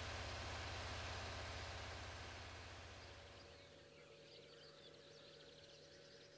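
Faint outdoor ambience fading out: a low steady rumble with a haze of noise in the first half gives way, about halfway through, to faint, repeated chirps of small birds.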